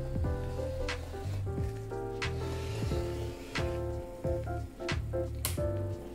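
Background music: a light melody of short plucked notes over sustained low notes, with a soft regular click roughly every second and a bit.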